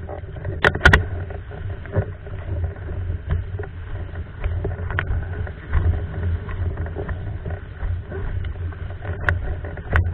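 Hypersonic windsurf board running fast over lake chop: a constant rough rumble of water and wind buffeting the rig-mounted microphone, with sharp slaps of the hull hitting waves about a second in and again near the end.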